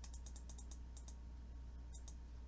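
Computer keyboard keys being pressed for shortcuts: a quick run of sharp key clicks in the first second, then a few more near the end, over a low steady hum.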